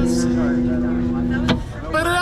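Amplified electric guitar chord ringing out steadily, then a fresh strum about a second and a half in, with people's voices talking over it.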